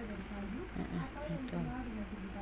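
A person's voice making short pitched sounds with no clear words, close to the microphone.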